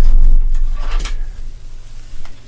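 Deep low rumble of handling noise as an arm moves right by the camera and over the wooden desk, loudest at the start and fading, with a short rustle about a second in.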